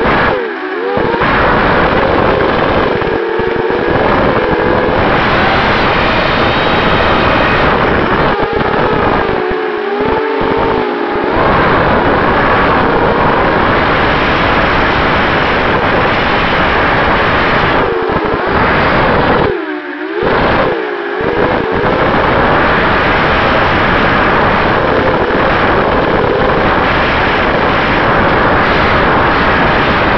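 Racing quadcopter's Sunnysky 2204 brushless motors and propellers whining loudly through the onboard camera's microphone, over a dense rush of air noise. The pitch rises and falls with the throttle, with short throttle-off dips near the start, about ten seconds in and about twenty seconds in.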